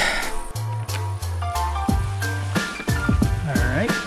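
Background music with a steady beat and a bass line that moves in held notes.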